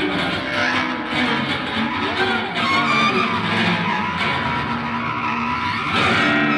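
Contemporary experimental music for string ensemble, guitar and bass clarinet: a dense, noisy texture of scraping sounds and sliding pitches.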